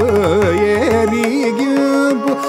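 Male Carnatic vocalist singing an ornamented phrase, his notes sliding and oscillating around held pitches, with mridangam strokes underneath for about the first second.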